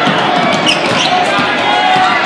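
A basketball dribbled on a hardwood gym floor, under loud crowd noise and voices from packed bleachers.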